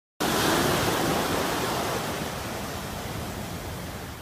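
A rush of hissing noise, like wind or surf, that starts abruptly and slowly fades away, without any tone or rhythm in it.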